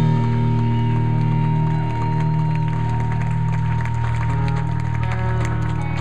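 Live rock band's distorted electric guitars and bass sustaining a ringing chord, with a steady high tone held over it that drops away about five seconds in, followed by a few sharp clicks.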